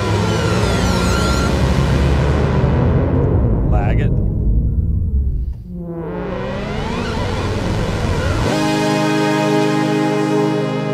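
Waldorf Blofeld synthesizer pad held under the mod and pitch wheels, gliding and sweeping in pitch and brightness. It thins and darkens about halfway through, then opens up again. Near the end it settles into a steady sustained chord. The movement comes from the mod wheel's lag processing, with its timing randomised by uncertainty modifiers.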